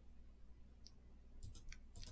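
Near silence: room tone with a few faint, short clicks in the second half, from a computer being used to scroll through a text document.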